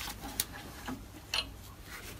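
A few light metallic clicks, about half a second apart, as a washer and lever lock are fitted by hand onto a bolt under a lathe's outrigger banjo, over a faint low hum.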